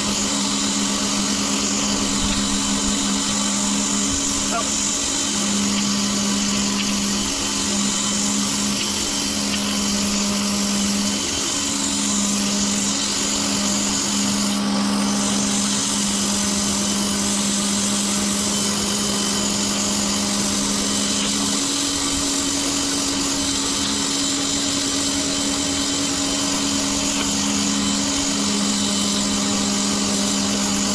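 Pressure washer running with a fine jet nozzle blasting water onto concrete paving slabs: a loud, steady spray hiss over the machine's low motor hum. The hum steps up to a higher tone for several seconds about two-thirds of the way through, then drops back.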